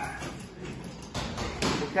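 Boxing gloves landing punches on a padded post: a few dull thuds in the second half, a combination thrown in quick succession.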